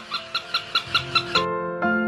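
A walking toy puppy gives a quick, even run of short high ticks, about five a second. Soft piano music takes over about a second and a half in.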